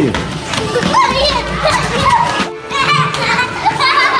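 Young children's voices calling out and shouting as they play a ball game, with a brief break about halfway through.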